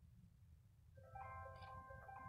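Near silence, then about a second in a soft music bed of several sustained, steady tones fades in.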